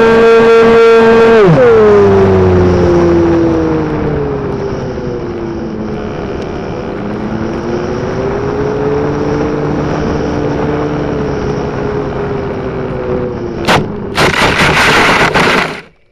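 Onboard sound of an RC model airplane's motor and propeller, steady at high power, then throttled back about a second and a half in, the pitch falling and then wavering lower as the plane glides down. Near the end a sharp knock as it touches down, then about two seconds of rushing, scraping noise as it slides through the grass, which cuts off suddenly.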